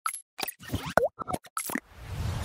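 Cartoon-style pop and plop sound effects of an animated logo intro: about six quick pops in two seconds, one of them sliding in pitch about a second in.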